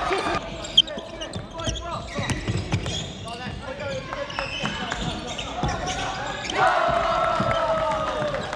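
Court sound of a youth basketball game in a gym: a basketball bouncing on the hardwood floor, with shoes squeaking and players calling out. Near the end, voices from the bench give a long shout of about a second and a half.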